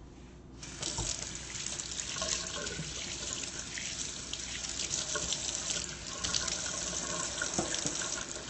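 A kitchen tap running into the sink: a steady rush of water that comes on suddenly just under a second in and keeps flowing.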